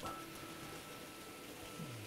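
Analogue model train running on the layout's track, heard as a faint, even whirr with a thin steady tone.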